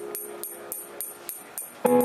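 Live indie band: a sparse, quiet break of light, quick, evenly spaced percussion ticks that fades down, then the full band comes back in loud with sustained chords just before the end.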